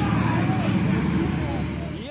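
Deep, steady rocket-engine rumble from a launch, easing slightly near the end.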